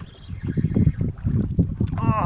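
Wind buffeting the microphone on an open boat, an irregular low rumble without speech.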